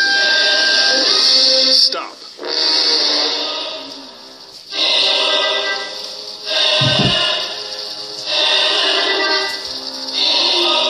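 Workout track music playing in phrases, with short drops in level between them. A single low thud comes about seven seconds in.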